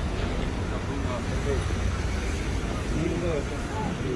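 City street ambience: a steady rumble of road traffic with faint, indistinct voices of passers-by.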